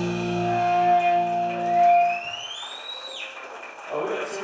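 A live pop-punk band's electric guitars and bass ring out on a final held chord, which is cut off about two seconds in. A whine of guitar feedback rises in pitch over about a second and then stops suddenly.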